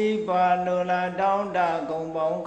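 A Buddhist monk's voice through a microphone, chanting Pali verses in a slow, even intonation, the syllables drawn out on a nearly level pitch.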